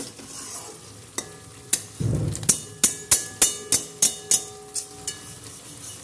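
Spatula stirring and knocking against a steel frying pan, about three clinks a second from about two seconds in, each leaving a brief metallic ring, over a faint sizzle of frying food.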